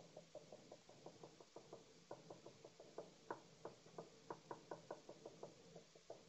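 Felt-tip marker dabbing dots onto a sheet of paper lying on a wooden table: faint, short taps in a quick, uneven run of about five a second.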